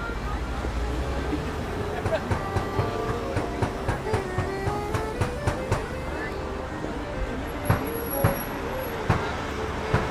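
Busy downtown street: passing traffic and nearby voices, with faint held accordion notes. About two seconds in a quick run of sharp taps starts, about three a second, and toward the end a few louder single knocks.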